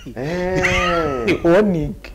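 A man's voice in studio conversation, drawing out one long, arching sound and then a shorter one.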